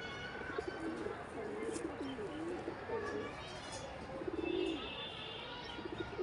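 Domestic pigeons cooing over and over, short low warbling calls that glide up and down. A brief higher chirping call comes about four and a half seconds in.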